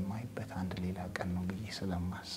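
A man speaking in Amharic.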